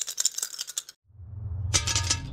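Plastic two-colour counters clattering onto a glass tabletop, a fast run of sharp clicks for about a second. Then a low hum and a short pitched swish of an editing transition effect near the end.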